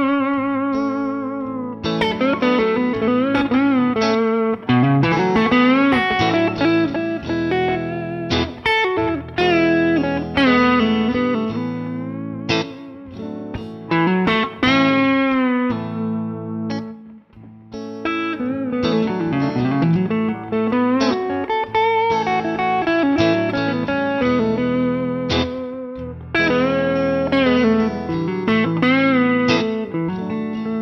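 Guitar playing lead lines in the A major pentatonic scale over a backing track of a major chord progression, with some held notes bent and wavering in pitch.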